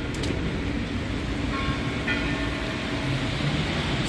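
Road traffic on a rain-wet street: tyres hissing on the wet asphalt as cars pass, with a steady engine hum underneath.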